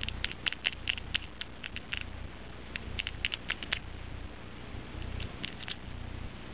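Long red-polished fingernails clicking and tapping against one another in quick runs of sharp clicks: a burst through the first two seconds, another around the three-second mark, and a few more near the end.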